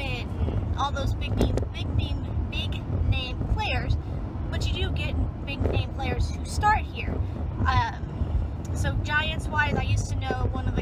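A woman talking over the steady low rumble of a car being driven, heard from inside the cabin.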